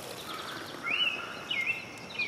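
Liquid poured from a glass measuring cup into a plastic sprayer jar, a faint trickle, with a few short thin whistled bird calls from about a second in.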